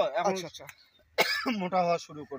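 Men talking in Bengali, with a short harsh cough a little over a second in.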